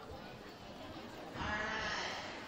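Low murmur of an audience in a school gym, then about one and a half seconds in a louder, wavering voice-like sound.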